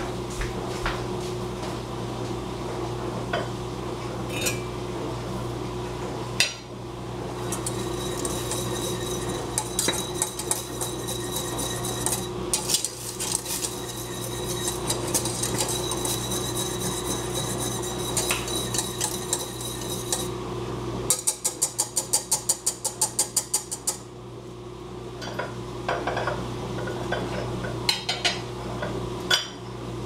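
Wire whisk beating hot chocolate in a stainless-steel saucepan, the wires scraping and clinking against the metal. Near the three-quarter mark there is a quick run of rapid, even taps, about five a second. A single metallic clank comes about six seconds in.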